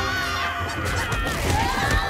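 A loud, pitched honk-like sound, held and wavering, with a second tone rising in and holding near the end.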